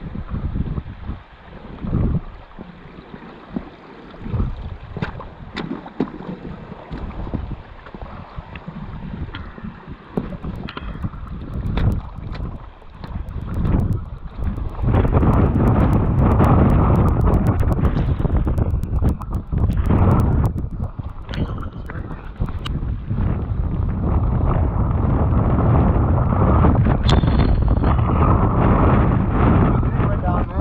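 Wind buffeting the camera microphone, in irregular gusts at first, then a loud steady rumble from about halfway on.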